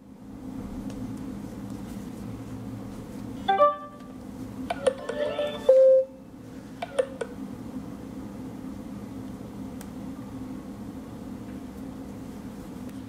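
Two smartphones handled and set against each other, with a short electronic chime from a phone about three and a half seconds in. Around five to six seconds in come several clicks and a brief, louder beep-like tone, then a couple more clicks, over a steady low hum.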